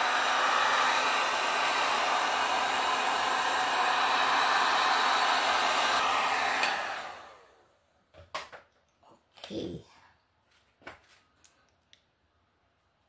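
Handheld heat gun blowing steadily over wet acrylic pour paint to pop surface bubbles. It is switched off about seven seconds in and its noise dies away, followed by a few faint knocks.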